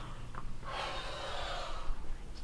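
A girl sobbing: a short catch of breath, then one long sobbing breath lasting over a second.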